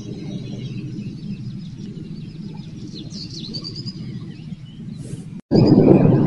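Small birds chirping in short trilled phrases, loudest a little past the middle, over a steady low background rumble. Near the end the sound drops out for an instant and a louder, steady rushing noise takes over.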